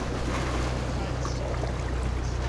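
Bay water lapping and splashing against shoreline rocks, over a steady low rumble.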